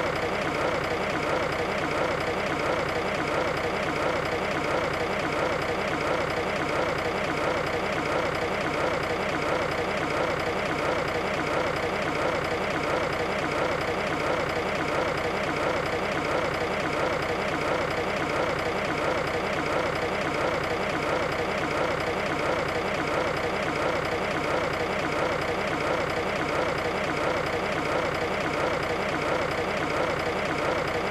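Heavy tipper truck's diesel engine running steadily while it tips its load.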